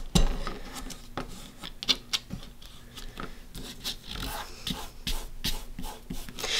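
Fingers pressing and rubbing a strip of painter's tape down over transfer tape on a wooden hanger: soft rubbing with irregular small clicks and crackles of the tape.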